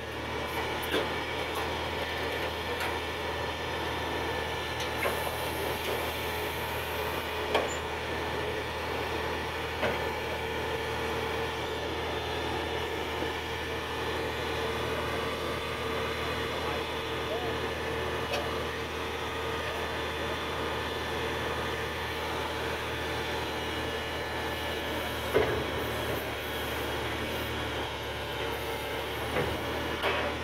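Truck engine running steadily to power the hydraulics of a truck-mounted knuckle-boom crane with a block clamp, a continuous drone with a steady hum. A few short knocks from the crane come through, the loudest near the end.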